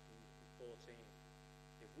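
Near silence with a steady electrical mains hum. A brief faint voice sound comes about two-thirds of a second in, and a man's voice starts a word at the very end.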